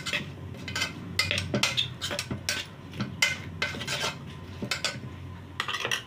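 A spoon stirring chunks of raw potato with ground masala in a steel pot, scraping and clinking irregularly against the metal a few times a second; the stirring stops right at the end.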